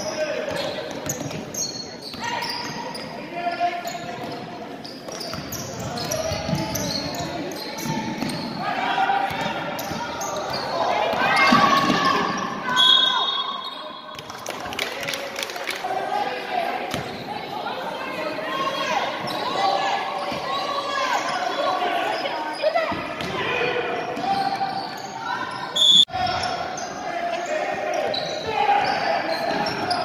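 Basketball being dribbled on a hardwood gym floor during a game, with players' and spectators' voices echoing around a large gymnasium. A couple of short, high whistle tones sound, one near the middle and one late on.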